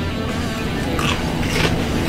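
A Pringles potato chip crunching in a few sharp snaps as it is bitten and chewed, over steady background guitar music.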